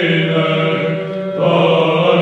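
Orthodox Byzantine chant of an apolytikion by male voices: a held melody over a steady low drone (the ison). The sound grows brighter about one and a half seconds in.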